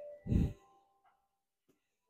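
A short breathy exhale, like a sigh, about a quarter second in, over a few faint held tones.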